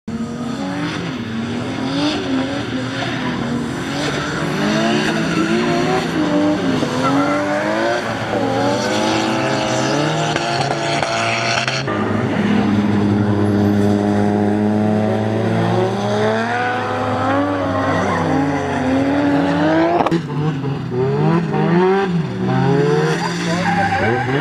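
Several drift cars' engines revving hard, their pitch rising and falling in overlapping waves as the cars slide sideways through a corner on a wet track. The sound changes abruptly twice.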